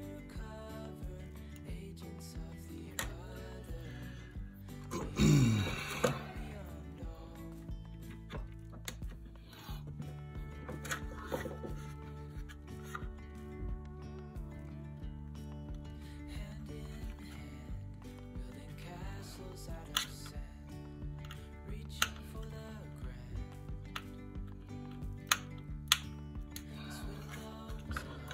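Background music with steady held notes and a loud falling sweep about five seconds in. Scattered light clicks and taps of plastic toy-drone parts being handled and screwed together, most of them in the second half.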